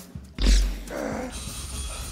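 An Iron Man gauntlet's thrusters fire up with a sudden loud roar about half a second in. They then run as a steady low rumble with a thin high whine, pulling hard on a hammer that will not move.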